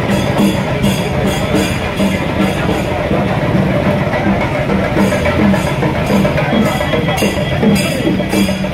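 Live street drumming with a steady beat of about two strikes a second, over the noise of a crowd on the move.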